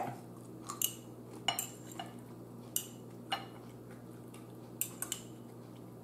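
A metal fork clinking against a plate and a small ceramic bowl: about eight light, separate clicks spread through the few seconds.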